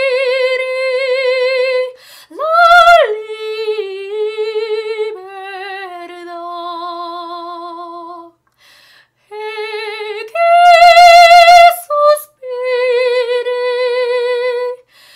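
A classically trained female voice singing an aria unaccompanied, holding long notes with wide operatic vibrato. A descending phrase ends in a breath about eight seconds in, and then comes a loud high held note before the voice settles back on a middle note.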